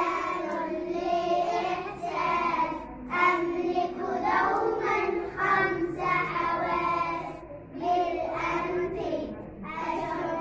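Group of young children singing an Arabic school song (nasheed) together in unison, in sung phrases with short breaks about three and eight seconds in.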